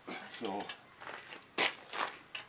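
A single short, sharp click about one and a half seconds in, from a ratchet wrench being put to the carriage bolts of a skid steer's over-the-tire track before they are tightened.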